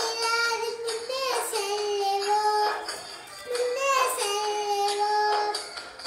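A young girl singing a Tamil song, holding long notes, with a short break about halfway through.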